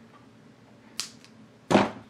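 Quiet workbench, broken about a second in by one sharp snip and a lighter click just after it, from small hand cutters trimming a piece of double-sided tape. A short rustling burst follows near the end.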